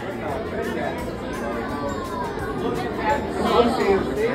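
Background chatter of many visitors talking at once in a large, echoing indoor space.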